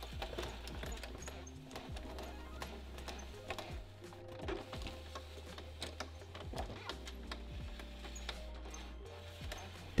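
Quiet background music with irregular small clicks and rattles from a VW T5's cable window regulator as the door glass is run up and down by hand, its guides and cables freshly sprayed with white grease.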